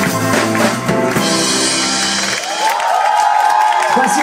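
Live rock band with drum kit ending a song with a final cymbal crash, the band's sound cutting off a little over two seconds in. The crowd then cheers.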